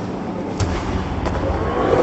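A volleyball attack at the net: one sharp smack of the ball about half a second in, over the steady noise of a crowded sports hall.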